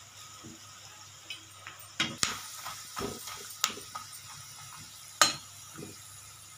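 Besan-coated peanuts deep-frying in hot oil in a kadhai, a steady faint sizzle. A slotted spoon stirring them knocks sharply against the pan about five times, the loudest knock near the end.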